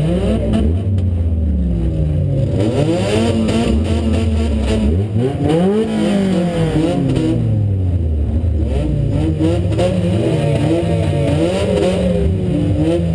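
Demo-cross car's engine, heard from inside the stripped cabin, revved up and down over and over, its pitch rising and falling several times.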